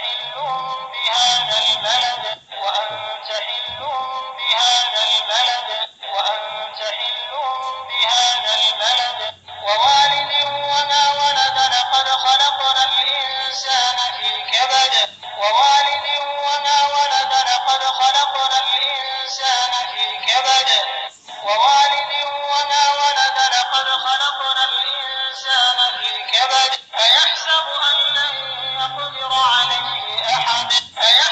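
Recorded male Qur'an recitation chanted in melodic phrases a few seconds long, with brief pauses between them. It plays through the small speaker of a Qur'an reading pen, so it sounds thin and tinny with no low end.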